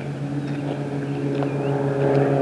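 A steady, low engine hum that grows slightly louder.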